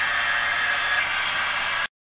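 Steady hiss of background noise with a few faint high whines, cutting off suddenly near the end.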